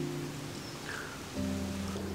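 Soft background music of held chords, moving to a new, lower chord about one and a half seconds in, over a faint steady hiss.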